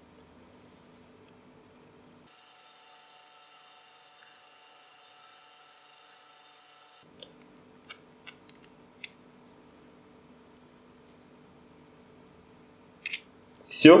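Light, faint metallic clicks of a tiny M2 nut and screw being handled and a small steel socket key engaging the nut to tighten it, a few scattered ticks over a steady low hum.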